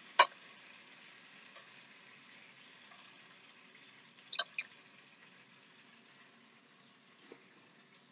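Faint sizzling from a frying pan of scallops, with metal tongs clicking sharply a few times as the scallops are lifted out: once just after the start and twice in quick succession about four and a half seconds in.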